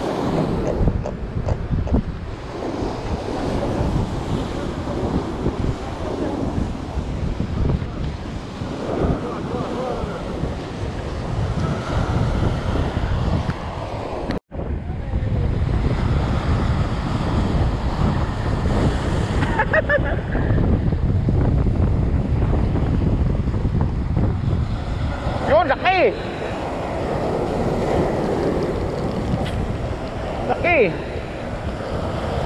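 Sea surf breaking and washing over shoreline rocks, with wind buffeting the microphone. The sound drops out for an instant about halfway through, and a few brief pitched calls come through about two-thirds of the way in and again near the end.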